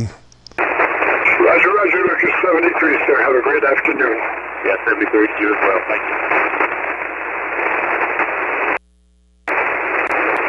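A ham radio voice coming in over single-sideband, narrow and thin and buried in band hiss; most likely the other station answering a sign-off. The voice fades into steady static after a few seconds, and the received audio cuts out completely for under a second near the end.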